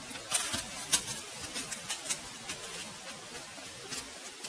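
Whitetail doe bounding away through dry fallen leaves just after being hit by an arrow: a quick run of leaf crunches, loudest in the first second, growing fainter as she runs off.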